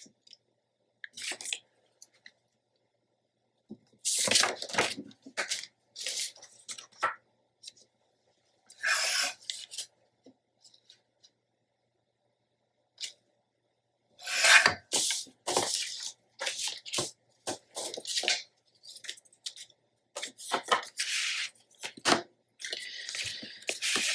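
Sheets of patterned scrapbook paper and cardstock being handled, rustling and sliding against each other and the cutting mat in a series of short bursts with pauses between, busier near the end.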